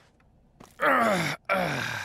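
A man's voice groaning twice, two long groans falling in pitch, the first starting about a second in.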